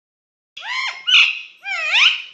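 Indian ringneck (rose-ringed) parakeet giving three short, high-pitched calls in quick succession starting about half a second in, the last one gliding upward in pitch.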